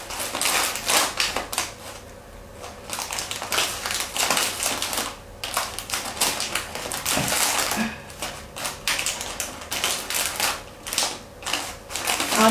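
Clear plastic flower wrap and paper crinkling and rustling in quick, irregular crackles as hands tie a gauze ribbon into a bow around a wrapped bouquet.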